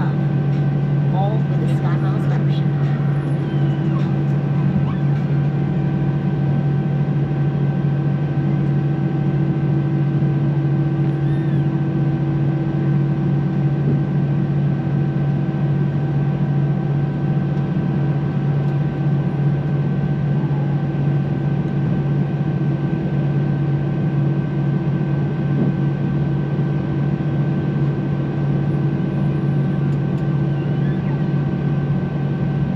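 Cabin noise of an Airbus A319 airliner taxiing: a steady hum from its engines and air systems, with several steady tones and no change in level.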